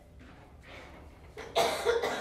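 A woman coughs about a second and a half in, one sudden loud cough after a short quiet pause.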